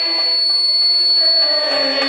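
Ney, the Turkish end-blown reed flute, playing a melodic passage of Turkish classical music, its notes changing about halfway through. A thin, steady high-pitched tone sounds throughout.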